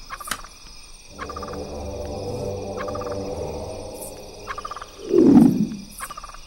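A low, rough animal-like growl lasting a few seconds, then a short loud roar that falls in pitch near the end, over a steady chorus of crickets.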